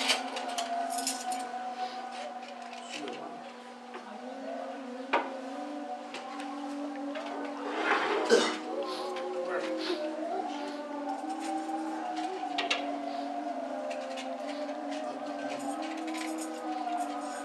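Porcelain plates and cutlery clinking and clattering as plates of food are handed round and set down on low tables, over a low murmur of voices. The loudest clatter comes about eight seconds in, with a few single clinks scattered before and after.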